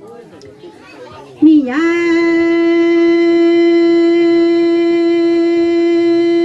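A woman singing kwv txhiaj, Hmong sung poetry, into a microphone: after a short pause she scoops up into one long, steady held note.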